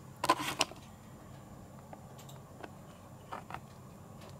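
A few sharp clicks close together in the first second, then a handful of faint scattered ticks over a quiet room.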